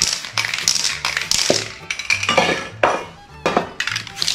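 Aerosol spray paint can spraying in short hissy bursts, with clinks of the can being shaken and handled, over background music.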